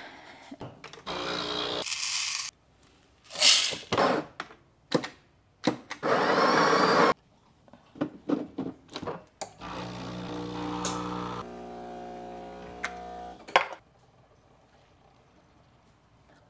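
Espresso machine at work: a few loud bursts of grinding noise mixed with sharp clacks of the portafilter, then a steady pump hum for about four seconds that cuts off, followed by a last click.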